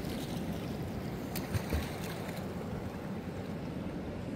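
Steady outdoor noise of wind on the microphone over calm seawater lapping at rocks, with a few faint ticks.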